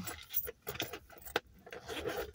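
Light clicking and rattling of small objects being handled, with one sharper click a little past the middle.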